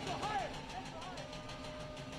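Distant, echoing stadium public-address voice announcing a substitution, heard faintly over the open ground.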